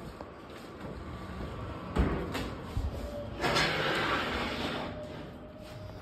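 Cardboard cases being moved on a two-wheeled hand truck over a wooden floor: a sharp knock about two seconds in, then a stretch of rolling and scraping noise from about three and a half to five seconds.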